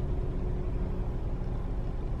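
A car idling, heard from inside the cabin as a steady low rumble.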